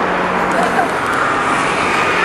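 Steady car engine hum with a low, even drone, under the chatter of people standing around.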